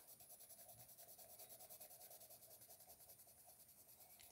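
Crayola Colors of the World colored pencil shading on coloring-book paper: faint, quick, even back-and-forth strokes of the lead scratching across the page as a first layer of skin tone is laid down.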